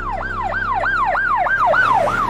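Electronic emergency siren in a fast yelp, its pitch sweeping up and down about four times a second.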